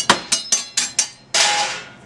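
Kitchen utensils clattering against a hard counter: about six sharp clacks in quick succession, then a short rasping scrape.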